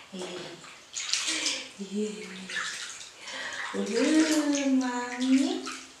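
Water splashing and sloshing in a bathtub as a baby is washed by hand. Over it comes a woman's wordless voice, ending in a long held, sliding tone near the end.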